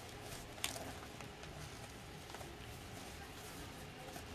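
Faint rustling of a satin ribbon and gift wrap as hands tug at a bow on a present, with one sharp click about half a second in.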